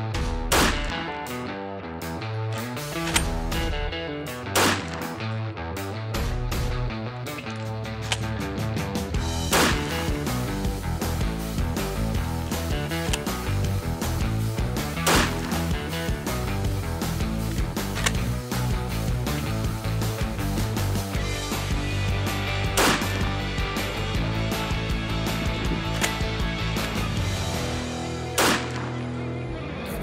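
Background music with a steady beat, overlaid by several loud 12-gauge shotgun shots spaced a few seconds apart.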